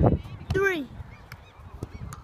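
A thump at the very start, then one short shouted call from a boy, falling in pitch, about half a second in.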